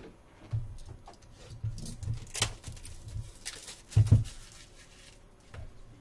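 Handling noise on a tabletop: a scatter of soft thumps and light knocks and ticks, the loudest about four seconds in.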